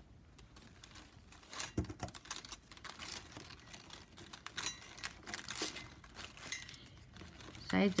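Plastic strapping band rustling and crinkling as the strips are handled and woven, with scattered light clicks and scrapes.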